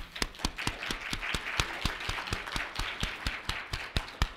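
Audience applauding in a lecture hall, many hands clapping at once and dying away near the end.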